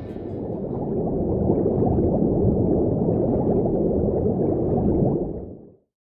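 A muffled underwater bubbling sound effect, steady and low, swelling in over the first second and cutting off abruptly near the end.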